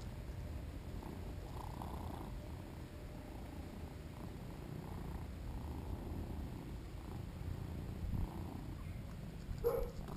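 British Shorthair cat purring steadily and close up while its belly is rubbed. There is a short sharp sound near the end.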